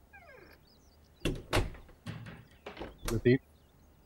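A door creaking on its hinges, falling in pitch, then a run of sharp knocks and clunks as it is worked shut. A short voiced sound comes near the end.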